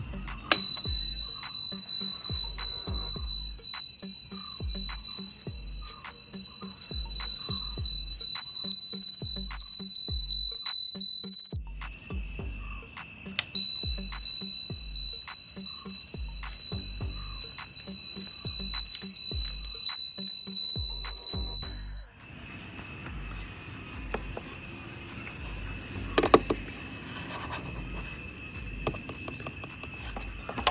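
Aftermarket indicator buzzer on a Revolt RV400 electric motorcycle giving a steady, piercing high-pitched tone for about eleven seconds. It stops briefly, then sounds again for about eight seconds, over background music with a beat.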